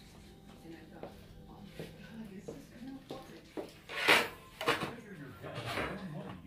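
Kitchen handling sounds of baked pies in glass dishes being lifted out of an oven and set on wire cooling racks: light clicks and knocks over a faint steady hum, then three louder scraping clatters, the first about four seconds in and the loudest.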